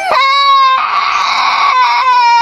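A young woman wailing loudly in one long, high-pitched held cry. It turns hoarse and raspy for about a second in the middle, then comes back clear.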